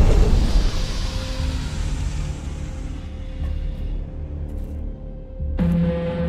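Dark, tense trailer score: a low sustained drone with a steady held note. The tail of a heavy hit fades out at the start, and a new low hit comes in near the end.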